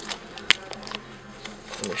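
A sharp click about half a second in, then a few faint clicks, inside a car cabin over a steady low hum.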